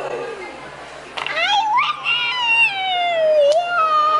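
A young girl's long, high-pitched squeal of excitement, starting about a second in and sliding slowly down in pitch, followed near the end by a second shorter high call.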